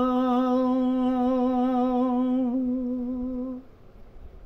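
An elderly man's unaccompanied voice singing a Gojri bait, holding one long, steady note that trails off and stops about three and a half seconds in.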